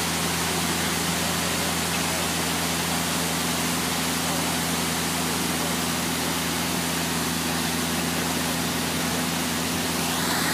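Heavy construction equipment engines running steadily: a low, even drone under a constant rushing hiss.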